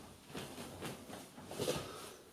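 Faint rustling of bedding with a few soft bumps as a person rolls over and climbs off a bed.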